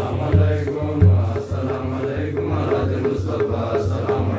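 Group of men's voices chanting a menzuma, an Ethiopian Islamic devotional chant, in unison over a steady low drum beat.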